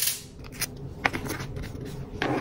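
A round sticker pressed onto a plastic poly mailer: a sharp click, then a few light ticks and rubs of long fingernails on the plastic.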